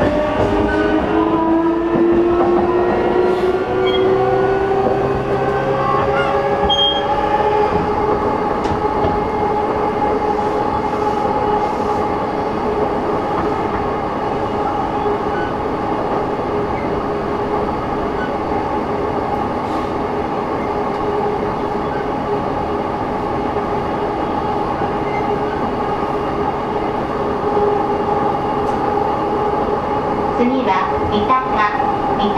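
Onboard running sound of a JR East E233 series motor car. The inverter and traction-motor whine rises in pitch over the first several seconds as the train gathers speed, then holds a steady tone over continuous rail and wheel noise while it runs at speed.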